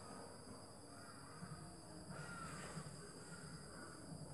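Faint background with steady high thin tones and one brief distant bird call about two seconds in.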